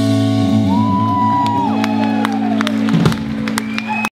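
A rock band's final chord ringing out on amplified electric guitars and bass after the drums have stopped, with a higher guitar note sliding up, holding and falling away over it. The held chord cuts off about three seconds in.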